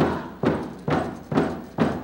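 Steady beats on a hide frame drum, about two strikes a second, five in all, each ringing briefly before the next.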